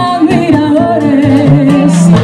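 A woman singing a held, wavering line in Spanish over a live Latin son/salsa band: acoustic guitar, a plucked bass line, timbales and congas.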